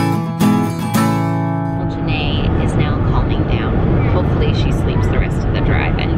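A short acoustic guitar music sting that ends about two seconds in, then steady car cabin road rumble with a baby screaming in high, wavering cries.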